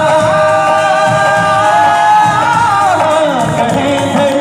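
Live South Asian song performance: a male singer holds one long note that slides downward about three seconds in, over tabla and harmonium accompaniment.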